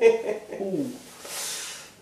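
A man groaning in pain from a slap to the cheek: falling drawn-out vocal groans, then about a second in a hissing breath through the teeth.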